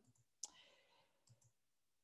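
Near silence broken by a single faint click about half a second in: a computer mouse click on the video's progress bar.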